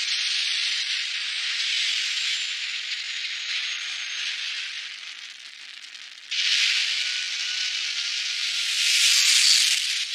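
Rocket engine sound effect for the Thunderbird 3 craft: a steady rush of exhaust noise that sags about five seconds in, surges back abruptly just after six seconds, and is loudest near the end.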